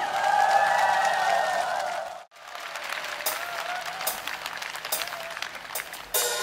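Audience applauding, with a sudden break about two seconds in where it cuts to a second crowd's applause.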